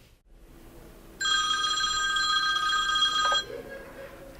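Desk telephone ringing: one steady electronic ring of about two seconds, starting about a second in.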